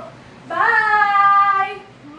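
A woman's voice holding one long, high sing-song note: it starts about half a second in with a rising swoop, holds level for over a second, then fades.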